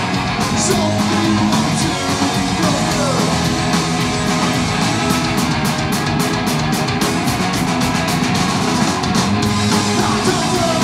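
A punk rock band playing live: electric guitars and a drum kit driving a fast, steady beat, with cymbals struck in quick succession.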